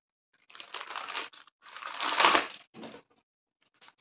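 Thin plastic packaging bag crinkling and rustling as a baby bib is drawn out of it. It comes in a few noisy bursts, the loudest about two seconds in.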